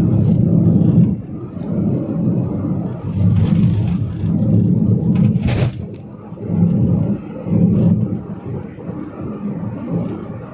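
Rumble of a moving road vehicle with wind noise from riding with the window open, swelling and dipping unevenly. There is a brief hiss about five and a half seconds in.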